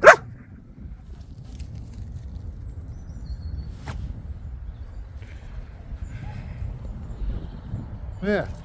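One short loud dog bark right at the start, then wind rumbling on the microphone, with a single faint click about four seconds in.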